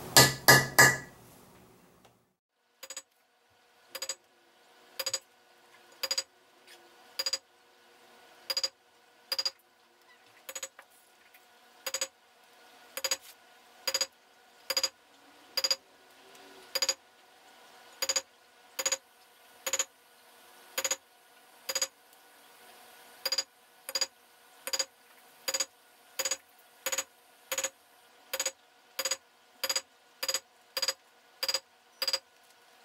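Metal mallet striking a metal leather-stamping tool, pressing a border pattern into dampened leather backed by a solid granite slab. The taps are sharp and ring, coming at about one a second, with three quick hard strikes in the first second.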